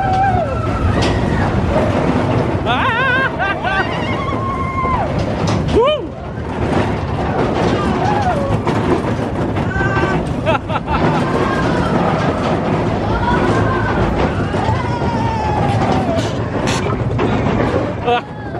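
Big Thunder Mountain Railroad mine-train roller coaster running along its track at speed, a steady loud rumble of the cars on the rails. Riders' voices rise and fall over it.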